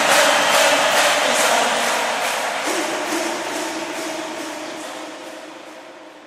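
A German party schlager song's final bars fading out: the band's steady beat and sustained chords sink evenly in level until they are faint.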